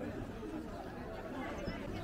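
Indistinct chatter of several passers-by talking.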